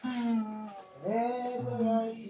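A voice singing two long held notes, the second sliding up into its pitch about a second in, over an acoustic guitar being played.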